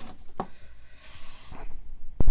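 A single sharp snip about half a second in, fitting wire cutters cutting through the thin nickel solder tag on a NiMH battery cell, followed by a brief rustle of the cell being handled on the work surface.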